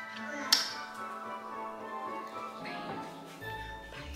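Background music with sustained chord tones, and one sharp tap about half a second in.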